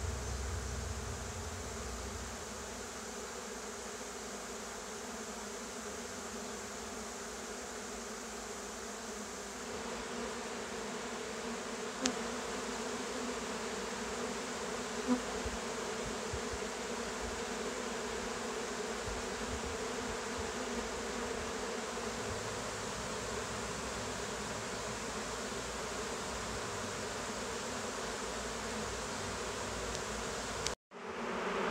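Dense, steady buzzing hum of a large swarm of honeybees crawling and flying around a wooden box as the swarm moves in.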